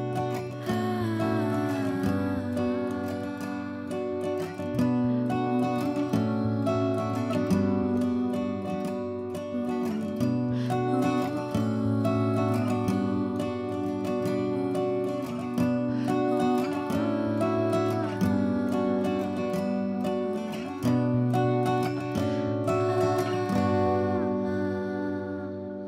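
Soft background music led by acoustic guitar, with plucked and strummed notes over a bass line that changes every couple of seconds.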